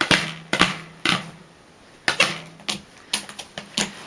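A small hand air pump worked in quick strokes, each a sudden puff of air that fades over a fraction of a second, about eight times at uneven intervals.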